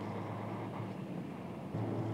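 Steady running noise heard from inside a moving vehicle's cabin: a low engine drone under road and tyre hiss. The drone gets a little louder near the end.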